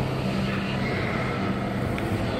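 A steady low hum over an even background noise, with no clear event in it.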